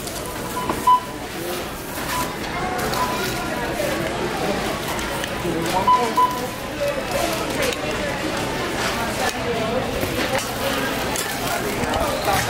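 Indistinct voices and chatter of a busy supermarket, with a few short beeps in the first half and again around six seconds in.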